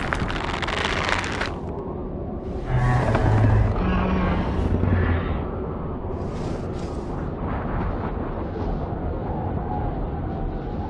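Booming explosion-like sound effects. A heavy blast dies away in the first second or two, then a deeper rumbling swell rises about three seconds in and fades to a steady low rumble.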